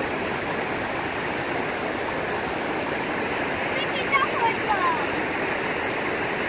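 Fast-flowing Niagara River current rushing past the shore, a steady, even wash of water noise.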